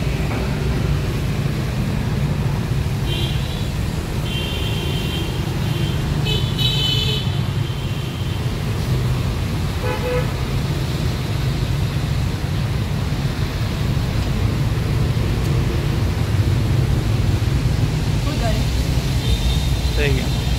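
Steady street traffic rumble, with vehicle horns tooting several times in the first half.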